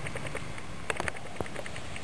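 Steady quiet background noise with a few small clicks about a second in.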